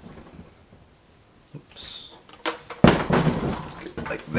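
Handling noise from assembling a brush cutter on a wooden workbench: a short scrape about two seconds in, then a clunk and rattle near the end as the shaft and plastic loop handle are moved.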